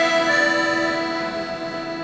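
Ensemble of accordions and bayans holding a sustained chord that slowly fades.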